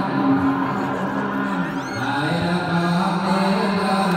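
Buddhist chanting: voices holding long, drawn-out tones, with a step in pitch about halfway through.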